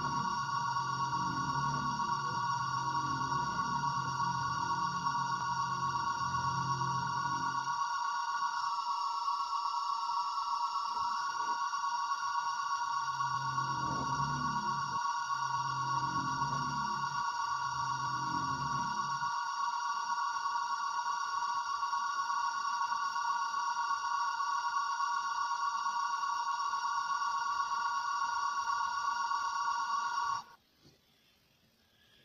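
An electronic drone of several steady high tones held without change, with deep pulsing tones underneath at the start and again about halfway through, all cutting off suddenly at the end.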